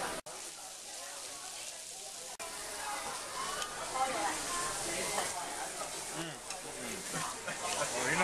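Meat sizzling on a tabletop Korean barbecue grill, a steady hiss, with voices talking behind it.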